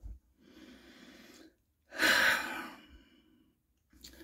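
A man breathing: a faint breath in, then a louder breath out, like a sigh, about two seconds in.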